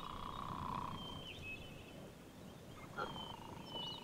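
Quiet outdoor ambience with a few faint, thin bird chirps and a low hum that fades out about a second in.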